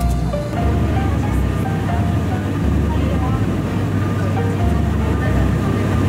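Background pop song in an instrumental stretch between sung lines, with repeated bass notes under a light melody.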